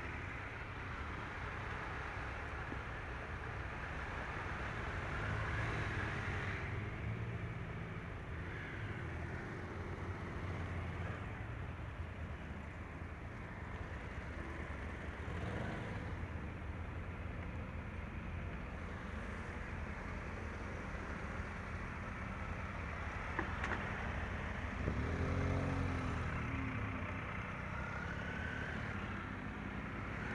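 Motorcycle engines running in a group, with a steady low rumble. About twenty-five seconds in, a louder engine note swells and fades as a motorcycle rides past close by.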